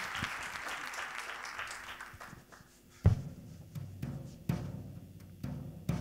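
Audience applause dying away, then a few dull, low thumps about a second apart, the first and loudest about halfway through.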